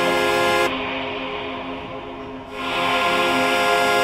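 Electronic club track with sustained, horn-like synth chords; about a second in, the top end is filtered away and the sound dulls, then it swells back bright about two and a half seconds in.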